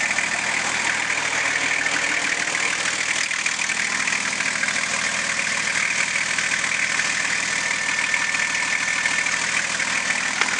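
Nissan Patrol Y61's RD28T 2.8-litre straight-six turbo diesel idling steadily.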